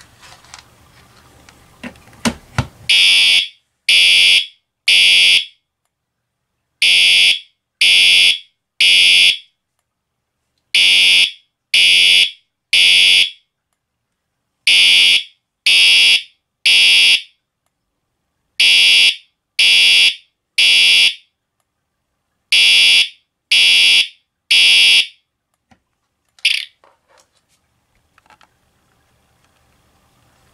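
Siemens UMMT-MCS multi-tone fire alarm horn sounding the Code 3 temporal pattern, the standard fire evacuation signal: three loud, buzzy half-second blasts, a pause of about a second and a half, repeated six times, with one short final blip near the end.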